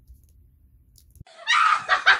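A person's high-pitched, shrieking laugh, broken into rapid pulses, bursting in about one and a half seconds in after a faint click; before it only a quiet low hum.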